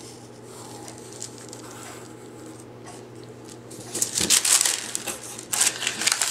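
A sheet of tracing paper rustling and crinkling in irregular bursts as it is lifted and handled, starting about four seconds in. Before that there is only faint pencil-on-paper tracing.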